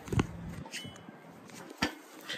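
Handling noise from a handheld phone: two short knocks about a second and a half apart, with faint rustling of a hoodie against the microphone.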